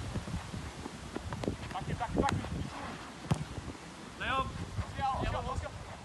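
Handball play: scattered sharp thuds of the ball and running feet on artificial turf, with two short shouts from players about four and five seconds in.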